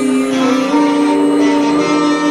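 Live rock band music with long held guitar notes and little bass underneath.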